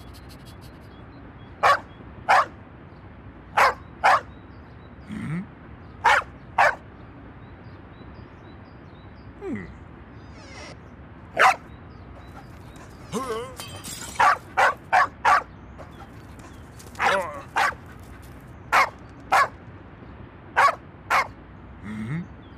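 A dog barking: short sharp barks, mostly in pairs about half a second apart, with a quicker run of four barks a little past halfway.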